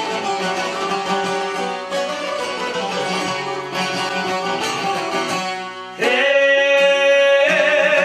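Albanian long-necked lutes, a çifteli and a sharki, playing a plucked instrumental passage of a folk song. About six seconds in, a man's voice comes in loudly on a long held note over the strings.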